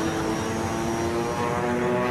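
Propeller aircraft engines droning steadily, with the pitch stepping up slightly about a second in.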